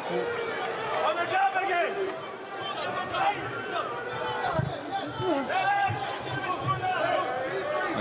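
Boxing arena crowd: many voices shouting and calling out at once, overlapping throughout.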